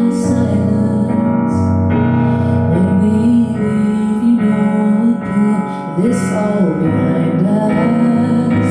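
A woman singing long, gliding notes over piano chords played on a Yamaha keyboard.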